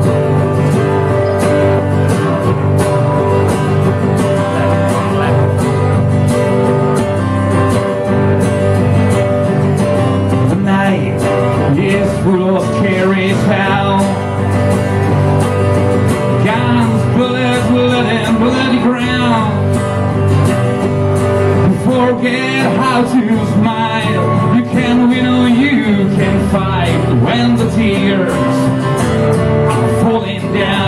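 Live acoustic song: a steadily strummed acoustic guitar, joined partway through by a man singing at the microphone.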